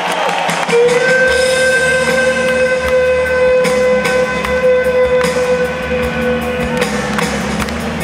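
Live rock band playing: one long sustained note, held for about seven seconds over a low bass rumble, with a new chord coming in at the end.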